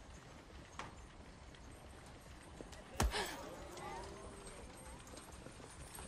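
Faint street ambience with horse hooves clopping and distant voices. A sharp crack about three seconds in is the loudest sound, with a smaller click just under a second in.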